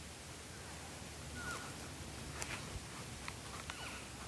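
Quiet outdoor ambience with faint hiss, broken by a few brief, high chirps that dip in pitch and several sharp little clicks in the second half.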